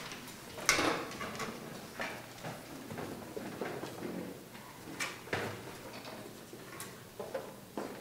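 Scattered knocks, clicks and rustles of a string ensemble settling on stage before playing, with chairs, music stands and instruments being handled; the loudest knock comes just under a second in. No music or tuning yet.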